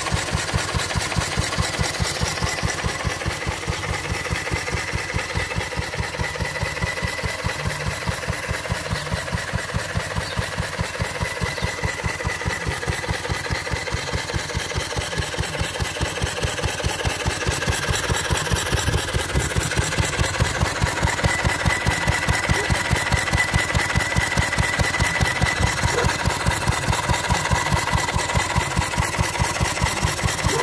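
1945 Wolseley WD2 single-cylinder petrol stationary engine running steadily with an even, regular exhaust beat while it drives a Lister domestic water pump by belt.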